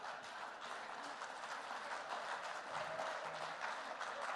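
Audience applauding steadily, with some laughter, in response to a joke.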